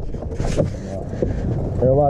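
Low, steady rumble of a vehicle at the roadside, with a brief rustle about half a second in.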